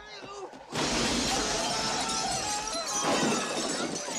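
A large plate-glass shop window shattering as a man is thrown through it. It breaks suddenly about three-quarters of a second in, and the crashing and tinkling of falling glass runs on loudly.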